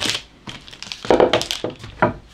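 Sheets of baking parchment crinkling and rustling under a wooden rolling pin and hands as tart dough is rolled out between them, in uneven bursts with the loudest crinkling about a second in.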